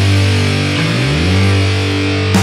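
Black metal band's electric guitars holding sustained chords without drums, the chord sliding up to a new pitch about a second in.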